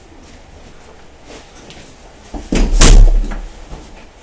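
A head butting a closed interior door: one loud thud about two and a half seconds in.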